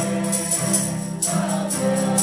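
Mixed choir singing a gospel song, accompanied by a keyboard and a strummed acoustic guitar, with a sharp rhythmic accent about twice a second.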